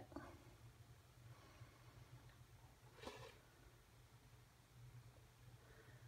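Near silence: room tone with a faint low hum and one faint, brief sound about three seconds in.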